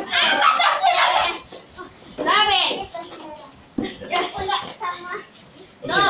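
Children's excited voices calling out and shouting while playing a running game, with a few short knocks in between.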